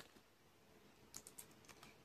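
Near-silent room with a quick run of faint clicks a little past halfway through.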